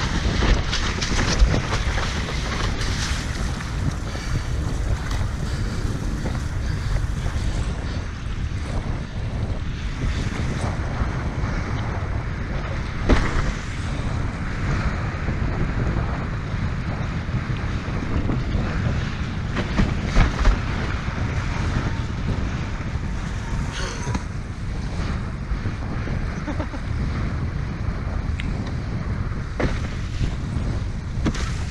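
Strong wind buffeting the camera microphone over the rush and slap of choppy sea water as a windsurfer sails at speed, with a few sharp knocks along the way.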